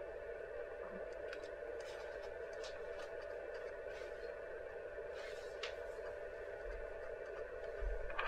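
Faint steady electrical hum, with a few light ticks scattered through it.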